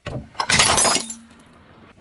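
A car tyre rolling onto a white plate of water beads, with the plate breaking under it: a sharp crack about half a second in, then a loud shattering crunch lasting about half a second that fades to a faint crackle.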